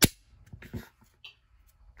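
Beretta Pico's stainless steel slide slamming home with a single sharp metallic clack as the slide release is pressed from lock-open, followed by a few faint handling clicks.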